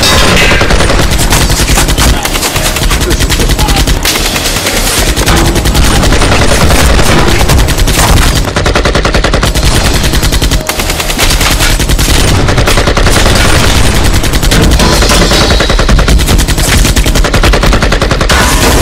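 Sustained automatic rifle fire: rapid shots in long, overlapping bursts with hardly a pause, easing off briefly about two and eleven seconds in.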